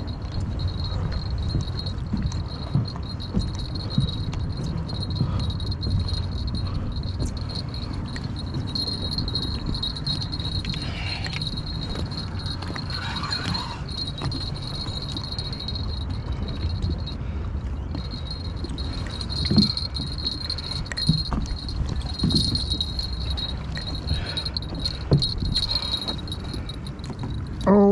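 Steady low rumble of wind on the microphone, with a thin steady high whine throughout and a few sharp knocks in the last several seconds.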